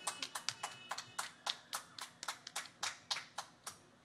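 Hand clapping from one or a few people close to the microphone: sharp, separate claps about five a second, a little uneven, stopping shortly before the end.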